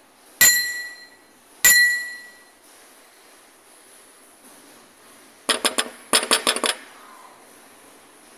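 Sound effects of an animated YouTube subscribe button: two bright ringing dings a little over a second apart, then, a few seconds later, a quick jingling rattle of the notification bell lasting about a second and a half.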